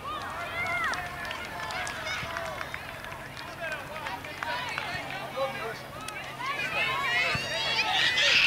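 Several girls' voices calling and shouting across a soccer field during play, distant and unintelligible, overlapping throughout.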